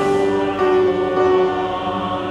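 Hymn music: held, sustained chords that change about half a second in and again near the end.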